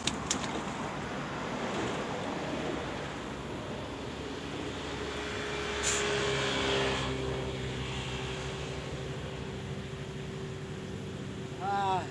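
A motor vehicle's engine hum over a steady background rush, swelling about six seconds in and then holding a steady drone.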